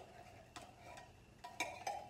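Light metallic clicks and taps from a metal soup can being handled with a spoon over a plastic bowl: one about half a second in and a few more near the end, between faint stretches.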